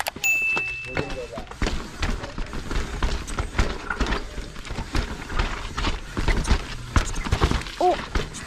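Mountain bike clattering and knocking over rocks and roots, its frame, chain and suspension rattling with many irregular sharp knocks. A short electronic chime sounds near the start.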